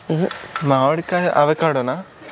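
A person speaking in short phrases; no other sound stands out.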